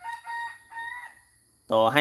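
A rooster crowing once: a held call of about a second and a half that rises slightly in pitch near its end.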